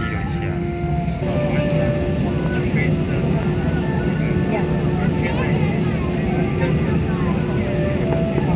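Steady cabin rumble of an Airbus A321-211 taxiing, its engines and air system running, with a steady hum throughout; it grows slightly louder about a second in. Passenger voices are heard faintly over it.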